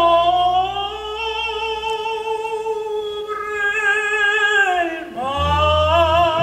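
An opera singer holds one long note with vibrato for about five seconds over orchestral accompaniment. The note slides down near the end and a new phrase begins, with the low strings coming back in.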